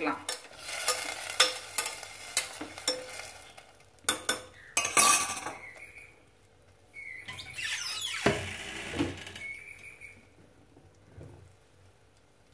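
Metal spoon stirring and clinking in an aluminium pressure-cooker pan of dal and vegetables in water, with scattered knocks against the pan. A louder rush of noise comes about four to five seconds in, and the sound then tails off to near quiet near the end.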